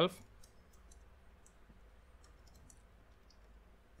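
Faint computer keyboard typing: a few light, scattered key clicks.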